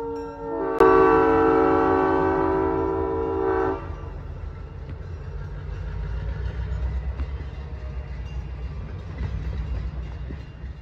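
EMD GP7 diesel locomotive's air horn sounding as it passes: one blast ends just after the start and a louder one begins about a second in and holds for about three seconds. After it comes the low rumble of the train's freight cars rolling past.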